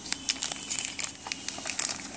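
Clear plastic accessory bags crinkling as a hand squeezes and rummages through them, a dense run of irregular sharp crackles.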